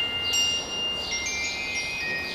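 High, bell-like chime notes ringing and overlapping, several held at once, with a new note sounding about every half second.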